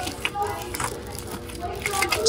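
Quiet shop background of faint voices and music with a steady hum, and a few light clicks and rustles from a plastic bag of glass Christmas ornaments being handled.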